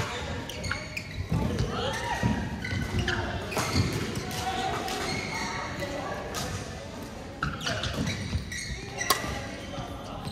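Badminton hall sounds: sharp racket hits on a shuttlecock and footfalls and squeaks of shoes on the court, one sharp hit about nine seconds in, with players' voices and chatter from other courts echoing in the large hall.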